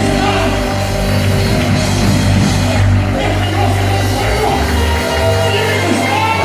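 Loud amplified worship music, a band with a strong, sustained bass line and some singing, filling a large reverberant church hall.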